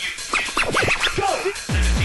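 Turntable scratching on a vinyl record, a run of quick back-and-forth pitch sweeps, during a hardcore techno DJ set. Near the end a heavy, fast hardcore kick drum comes in at about four beats a second.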